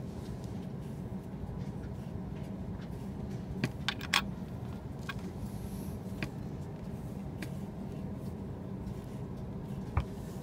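Swivel knife cutting along traced lines in leather, a faint scraping, over a steady low hum. A quick cluster of sharp clicks comes about four seconds in, with single clicks near six seconds and at the end.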